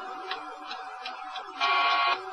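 Cockpit voice recorder audio from a DC-9 flight deck: a steady cockpit hum with a few faint ticks, then a loud, short electronic tone lasting about half a second near the end.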